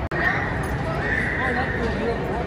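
Busy indoor arcade and midway din: voices mixed with pitched game noise, with a held high tone and wavering, call-like sounds. The sound drops out for an instant just after the start, at a cut.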